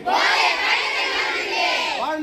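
A large group of schoolchildren shouting a slogan together. Many voices overlap loudly at once, with no single voice standing out.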